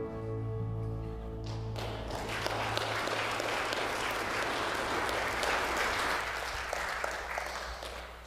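The worship band's last held chord dies away about two seconds in, and a congregation's applause takes over, thinning out near the end.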